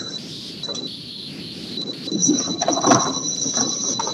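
A pause in the talk filled by a faint, steady high-pitched electronic whine over low background noise; a second, higher tone joins about halfway through.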